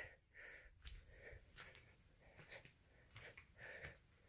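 Near silence, with a few faint breaths close to the microphone.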